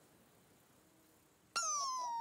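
Near silence for about a second and a half, then a high, thin cartoon squeak starts suddenly and slowly slides down in pitch.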